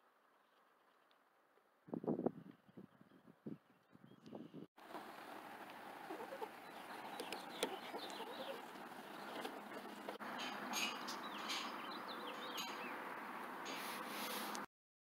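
Small birds chirping over a steady outdoor hiss, with a few dull thumps about two seconds in.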